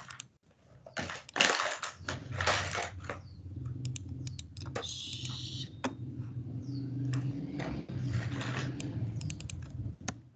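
Computer keyboard and mouse clicks as an equation is cut and opened for editing, with a steady low hum underneath from about two seconds in.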